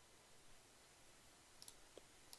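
Near silence with faint computer mouse clicks, a quick pair near the end.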